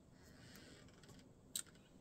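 Near silence: faint rustling of a skein of acrylic yarn being handled, with one small click about one and a half seconds in.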